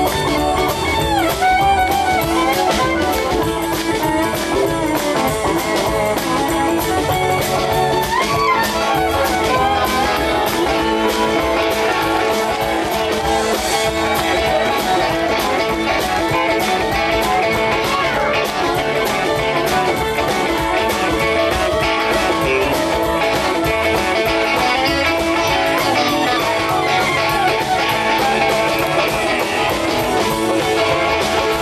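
Live country string band playing an instrumental passage, with plucked guitar strings to the fore over a steady, unbroken accompaniment.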